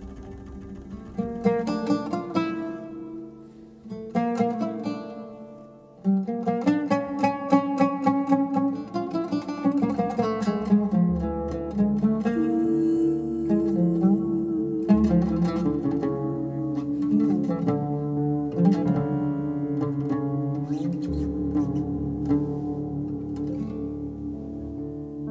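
Instrumental break of a rebetiko song in a jazz arrangement: a plucked-string lead plays phrases of quick, decaying notes, first in short separate bursts, then in a continuous melodic run. Low bass notes join from about halfway.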